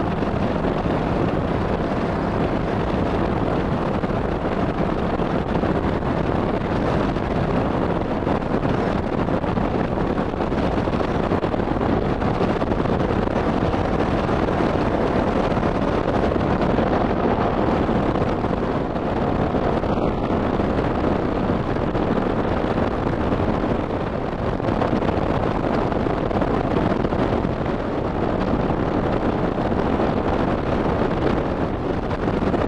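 2007 Triumph America's 865cc parallel-twin engine running steadily at cruising speed, mixed with heavy wind rush on a helmet-mounted microphone.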